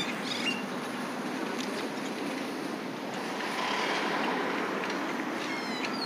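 Outdoor street ambience: a steady hiss of traffic and air, with a few faint high chirps near the end.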